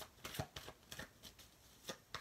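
Tarot deck being shuffled by hand: a run of quick, irregular card flicks and taps.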